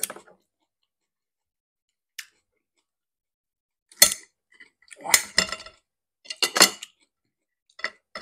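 Knife knocking and scraping against a glass plate while cutting apart baked pork ribs: a sharp clink about four seconds in, then two short bursts of clatter about five and six and a half seconds in.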